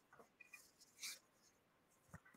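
Near silence: room tone with a few faint, brief rustles, the clearest a short scratchy one about a second in.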